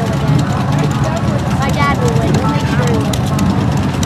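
Motorcycle engine idling steadily at the start line, with people talking close by.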